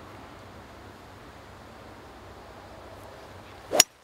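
Golf club striking a ball in a full swing: one sharp, loud crack near the end, over a faint steady background hiss.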